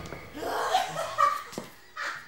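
People laughing and chuckling in short, uneven bursts, with a single sharp click about one and a half seconds in.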